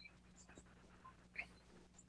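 Near silence on an open video-call line: faint room tone with a low steady hum and one brief faint blip about one and a half seconds in.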